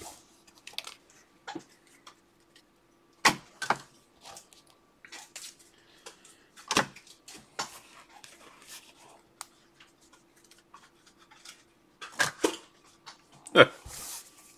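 Trading cards being handled and set down on a tabletop: scattered light taps and clicks, over a faint steady hum.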